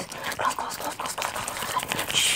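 Breathy, whisper-like mouth sounds mixed with rapid clicks and rustles from hands moving fast close to the microphone.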